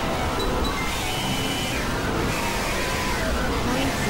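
Dense collage of several overlapping music and sound tracks played at once: a steady, noisy wash with scattered short held tones and no clear speech.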